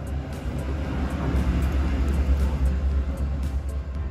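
Background music over a low rumble that swells through the middle few seconds and fades near the end.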